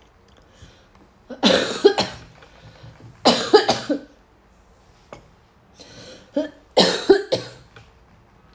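A woman coughing in three loud bouts of two or three coughs each, the first about a second and a half in, the second about two seconds later, and the last near the end.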